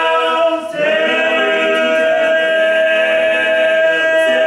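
Four male voices singing a cappella in close harmony, holding long sustained chords; the chord breaks off briefly and changes about a second in, then is held.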